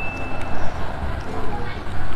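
Close-up chewing of crunchy batter-fried squid, with mouth noises. A single chime tone fades out in the first half-second.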